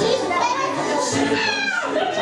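A group of children chattering and calling out over one another, with one child's high voice sliding up and then down near the end.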